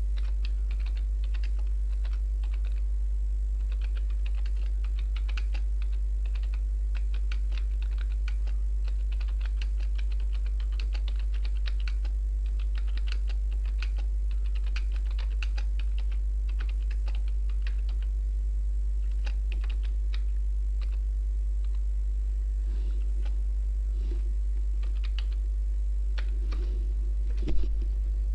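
Typing on a computer keyboard: a run of irregular key clicks over a steady low hum. The typing thins out in the last few seconds, and one louder knock comes near the end.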